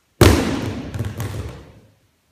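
A wooden aikido practice weapon dropped onto the gym mats: one sharp, loud thud, then a few lighter knocks as it bounces and settles, with the sound dying away in the hall over about a second and a half.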